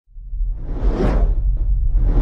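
A cinematic whoosh sound effect over a deep low drone, swelling up out of silence and peaking about a second in.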